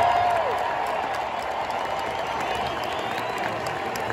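Large arena crowd applauding, the clapping slowly dying down.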